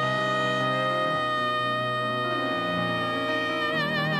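Jazz music: a long held note over a slowly changing accompaniment, which swells into a wide vibrato near the end.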